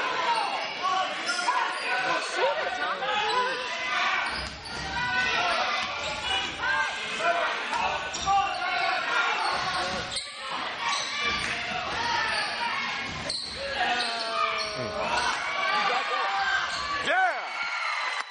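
Basketball game on a hardwood gym court: the ball bouncing repeatedly on the floor, sneakers squeaking in short glides, and players' and spectators' voices, all echoing in the hall.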